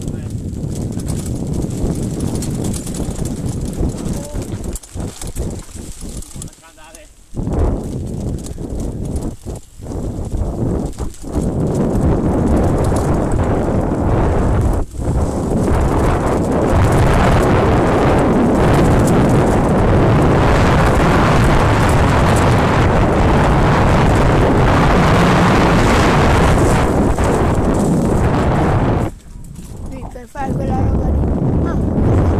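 Wind rushing over the microphone with the rattle of a bike and its tyres running down a leaf-covered dirt trail at speed. It is broken by short dips in the first half, then loud and steady until it falls away suddenly just before the end.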